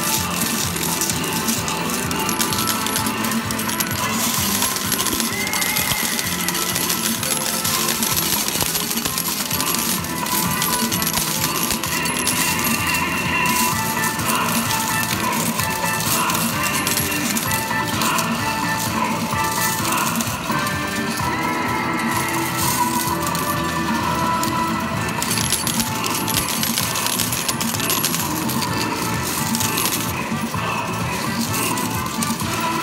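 Metal medals clinking and clattering in an arcade medal pusher machine, the clicks dense and continuous, over electronic arcade music and jingles.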